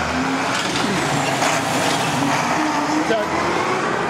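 Street traffic: a car driving past, with engine and tyre noise that swells a little around the middle.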